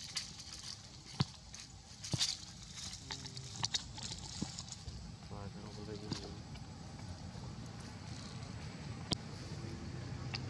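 Dry leaves and twigs crackling and clicking in short, scattered snaps as a baby macaque scrambles and handles them on the forest floor, with faint, indistinct voices in the background.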